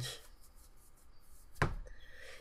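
A single short, sharp thump about one and a half seconds in, against an otherwise quiet room.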